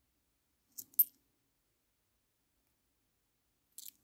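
Two short metallic clicks of brass Hong Kong coins touching as they are handled, about a second in, the second one louder and sharper; a faint tick near the end.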